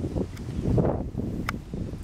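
Wind rumbling on the microphone, with one short, sharp click about one and a half seconds in.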